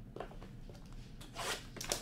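Trading cards and their paper and plastic packaging being handled, with short rustles and scrapes, the loudest about a second and a half in.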